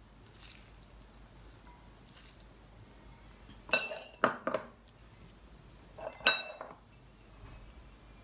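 Glass bowls clinking as they are handled: two quick clusters of sharp glass clinks, each with a short ring, in a quiet kitchen.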